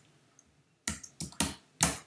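Computer keyboard typing: about four sharp, loud key clicks in the second half, the last being the Enter key.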